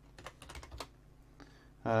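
Computer keyboard keys clicking as a short command is typed: about half a dozen quick keystrokes in the first second, then a pause.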